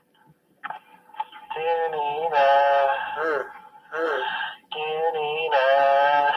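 A voice singing long, wavering held notes in phrases separated by short pauses. It starts about a second in, after a near-silent moment, and there is no clear beat behind it.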